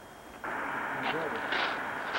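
A steady hiss of outdoor background noise that starts suddenly about half a second in, with faint voices in it.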